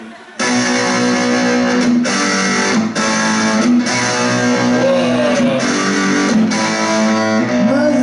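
Electric guitar played through an amplifier: sustained chords and notes come in about a third of a second in and change every second or so, with bent notes near the middle and near the end.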